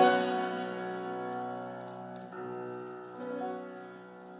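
Grand piano accompaniment playing sustained chords that ring and fade, with fresh chords struck about two and three seconds in.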